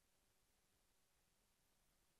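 Near silence: the sound track has dropped out, with only a faint, even noise floor left.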